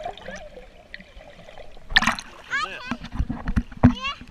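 Swimming-pool water splashing against a camera as it comes up to the surface: a sharp splash about halfway, then sloshing thumps and a louder hit near the end. A child's high voice squeals over it.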